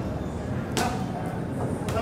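A boxer's punches landing on focus mitts: two sharp hits about a second apart.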